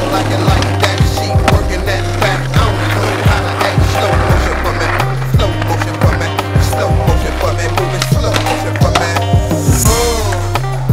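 Skateboard rolling and clacking on concrete over a hip-hop beat with a repeating bass line.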